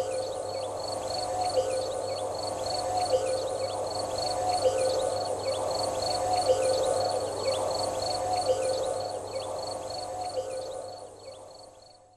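A night-time animal chorus: high chirps repeating about three times a second over lower calls, fading out near the end.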